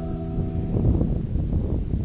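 A man's last held sung note fades out in the first moments, leaving wind buffeting the microphone with an uneven low rumble.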